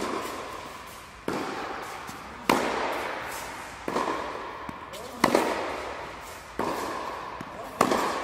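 Tennis ball struck by racket strings in a baseline rally on an indoor court, about seven sharp hits evenly spaced roughly a second and a quarter apart. Each hit rings on in the echo of the enclosed tennis hall.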